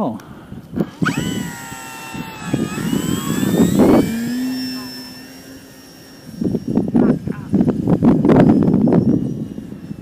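Durafly Tundra RC plane's electric motor and propeller whining as it climbs away after takeoff, the pitch dropping as it passes and draws off. In the second half, gusts of wind rumble on the microphone.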